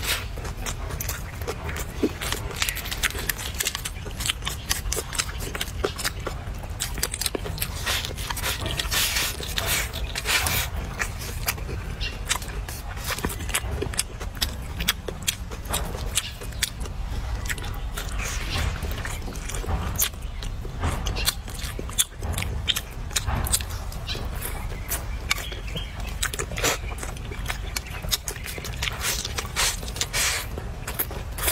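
Close-up mouth sounds of eating a bowl of hot and sour noodles: slurping noodles and chewing, a dense run of sharp wet smacks and clicks, over a low steady rumble.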